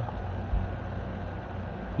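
Steady low hum and hiss of an open phone line with no voice on it, the sign that the other party has hung up; a soft low thump about half a second in.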